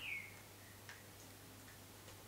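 Very quiet room tone with a steady low hum. A faint high squeak fades out at the very start, and a single small click comes a little under a second in.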